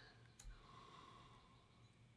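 Near silence: room tone with a low hum, and one faint sharp click about half a second in.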